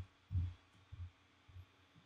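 Faint, soft low thuds of keystrokes on a computer keyboard, four or five irregular taps about half a second apart.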